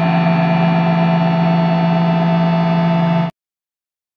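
A loud, sustained ambient drone of several steady held tones closing a post-black-metal track. It cuts off suddenly a little over three seconds in.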